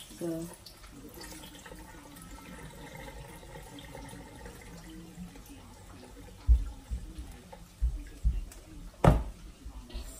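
Cloudy rinse water pouring from a plastic tub of bulgur wheat into a stainless steel sink as the grain is washed. In the second half come a few low thumps and one sharp knock about nine seconds in.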